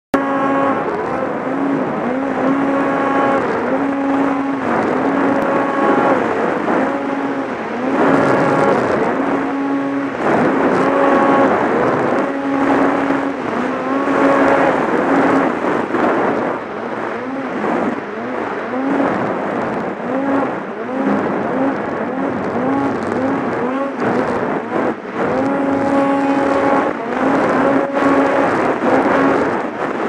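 Snowmobile engine running hard under the rider, its steady high note broken again and again by quick rises and falls in pitch as the throttle is worked, over a constant rushing noise.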